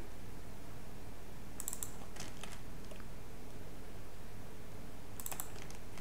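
Computer keyboard keystrokes in a few short bursts while code is typed, over a low steady hum.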